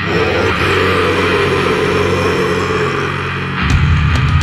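Death-doom metal recording: loud distorted guitars hold a sustained chord with little low end under them, then bass and drums come back in heavily about three and a half seconds in.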